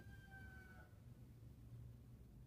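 Near silence: faint room tone, with a faint, slightly falling tone in the first second that dies away.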